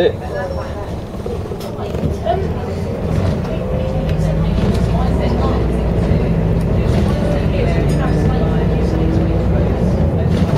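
Cabin noise inside a moving Arriva bus: the diesel engine and road rumble drone steadily. The sound grows louder about three seconds in, as the bus picks up speed.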